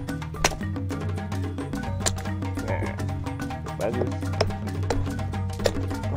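Background music with a steady bass line. Over it come a few sharp knocks at uneven intervals, a blade striking the very hard shell of a mature coconut as it is split away from the flesh.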